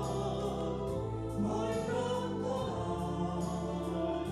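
A woman singing a song into a microphone over instrumental accompaniment with a steady beat, the voice holding long notes.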